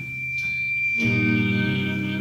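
Live progressive rock band music: a steady high held note over bass, with the fuller chords of the band coming back in about a second in.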